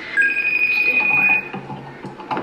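FaceTime outgoing call ringing on a MacBook while the call waits to be answered: a short lower tone, then one steady high ring tone lasting just over a second.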